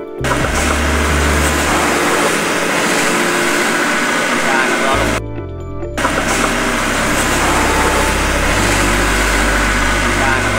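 Background music with a steady bass line, over a loud, even rushing noise with voices in it. The rushing noise cuts out briefly about five seconds in.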